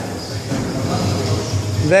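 Indistinct voices over a steady low hum, with a man's voice calling out sharply near the end.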